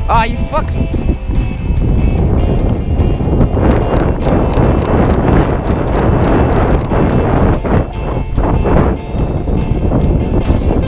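Wind buffeting an outdoor camera microphone, with regular thudding footsteps and rustling as someone runs across grass. The steps are clearest in the middle of the stretch.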